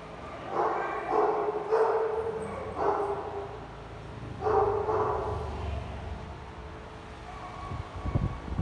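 Dog barking, a run of about five sharp barks in the first five seconds, then a lull.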